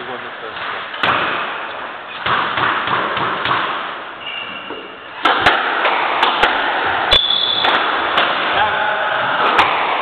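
Squash rally: the hard rubber ball is struck by rackets and hits the court walls, a run of sharp cracks at uneven intervals starting about halfway through. Short squeaks of court shoes on the wooden floor come between the shots.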